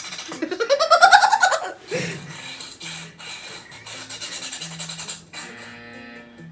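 Light background music from a variety show's soundtrack, with a loud, brief high sound sliding up and then back down about a second in.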